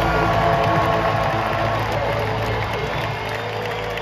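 A rock band's last chord rings out over a stadium PA and fades over about three seconds, while a large crowd cheers and whoops.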